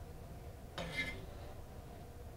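A chef's knife making one slicing cut through a raw potato onto a cutting board, a short sound about a second in.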